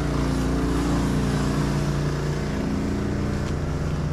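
A small engine running steadily at a constant speed, an even unbroken hum.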